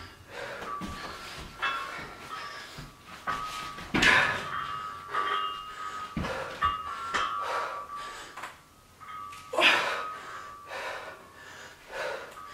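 A woman breathing hard from exertion through repeated barbell squat-and-press reps, with sharp exhales every second or two; the loudest come about four seconds in and again near ten seconds.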